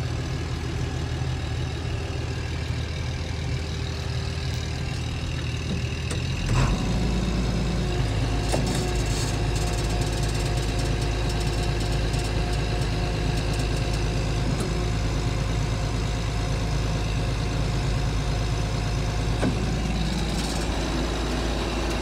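John Deere 5460 forage harvester's diesel engine running steadily, heard from the operator's cab. About six and a half seconds in, its note changes and it gets a little louder, then holds steady. It runs smoothly.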